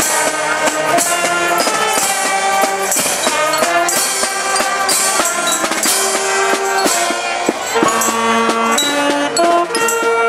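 A street brass-and-percussion band playing a tune. Trumpets, a sousaphone and a saxophone carry the melody over bass drum, snare drum and crash cymbals.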